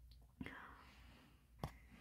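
Near silence, with a faint breath about half a second in and a soft click near the end.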